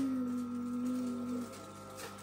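A young girl's long, steady hum, a closed-lipped 'mmm', sinking slightly in pitch and stopping about a second and a half in.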